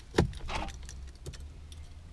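Car key pushed into a Mercedes C-Class ignition switch and turned to switch the ignition on: a sharp click near the start, with the keys on the ring jangling.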